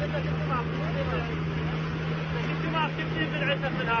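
Motor of a long, narrow passenger boat running steadily at speed, a constant low drone over the rush of water and spray. Voices call out over it, most in the last second or so.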